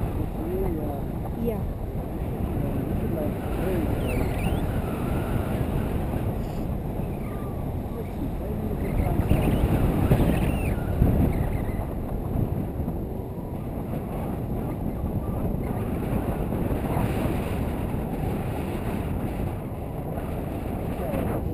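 Wind rushing over the microphone of a selfie-stick camera on a tandem paraglider in flight, a steady low buffeting that grows louder around ten seconds in.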